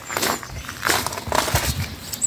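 Footsteps and clothing rustle: a few irregular crunchy scuffs while walking round the van.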